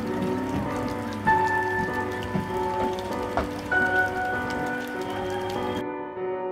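Small garden fountain splashing into a pond, a steady patter of falling water that cuts off suddenly near the end, heard under background music of long held notes.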